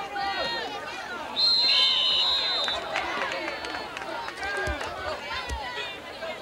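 Spectators in the stands talking and calling out. About a second and a half in, a loud, shrill whistle blast lasts over a second, with a second, lower whistle briefly sounding with it: the referees' whistles ending the play.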